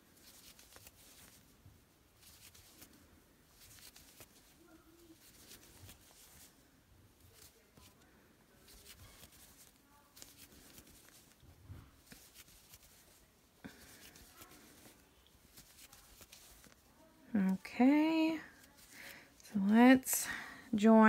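Faint, intermittent rustling and scratching of yarn being drawn through stitches by a crochet hook during single crochet, with a voice coming in near the end.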